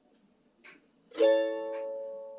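F-style mandolin: a single chord, fretted up the neck, is strummed about a second in and left ringing, slowly fading.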